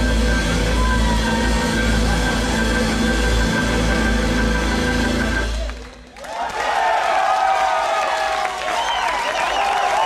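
Blues-rock band of electric guitar, bass, drums and keyboards holding a final chord that stops suddenly about six seconds in. A club crowd then cheers and applauds.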